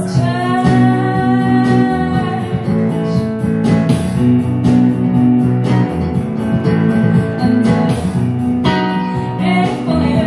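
A live band playing a song: a woman singing over keyboard and electric guitar.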